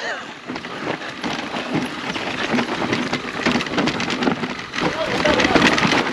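Mountain bike riding fast down a rough, stony trail: tyres crunching and the bike rattling over loose rocks, a dense run of small knocks over a steady rush of noise.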